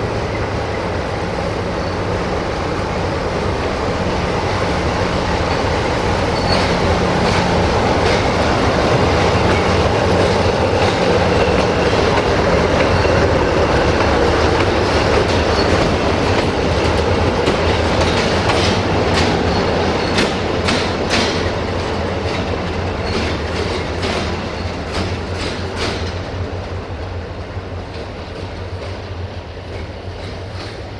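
CFR 060-DA (LDE2100) diesel-electric locomotive passing by, its Sulzer diesel engine running steadily, growing louder to a peak about halfway through and then fading. Its wheels click over rail joints and points, most densely in the second half.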